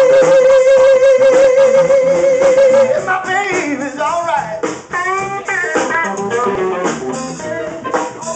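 Live electric blues band playing: one long held note for about the first three seconds, then electric guitar licks with bent notes over the bass and rhythm.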